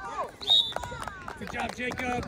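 Several spectators' voices shouting and calling out at once across a sports field. About half a second in there is a short, loud, high-pitched sound, and faint clicks are scattered through.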